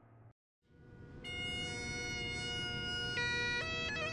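Bagpipes fade in after a moment of silence, sounding a steady drone under long held chanter notes that step to new pitches twice near the end.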